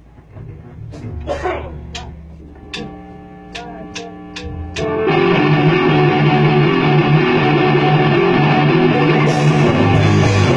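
A metal band playing live in a rehearsal room. It opens with a held guitar note and a few sharp ticks about every half second. About halfway in, the full band comes in loud with heavily distorted electric guitars, bass and drums, and cymbals join near the end.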